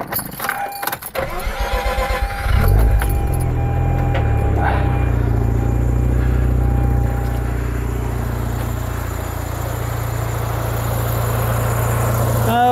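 Turbocharged Mazda RX-8's twin-rotor Wankel rotary engine being started: it catches about two and a half seconds in and settles into a steady idle. A thin steady tone sounds over it until about seven and a half seconds in.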